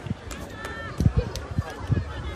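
Dull thumps of feet running and stamping on the ground, several in the second half, from recruits performing a martial arts routine, over a background of crowd voices.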